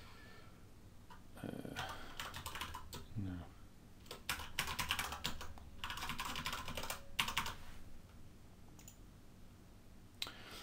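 Computer keyboard typing in several quick bursts of keystrokes as a username and password are entered.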